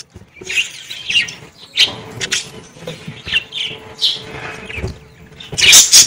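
A flock of budgerigars chirping, many short high chirps overlapping in quick succession. Near the end a loud, noisy flurry as birds flap their wings and fly off.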